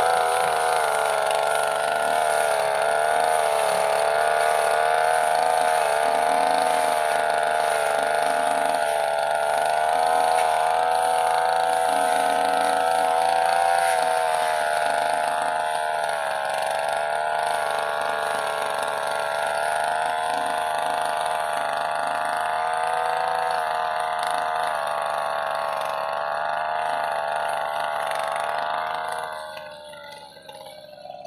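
Backpack brush cutter's small engine running steadily, its pitch wavering a little; it dies down near the end.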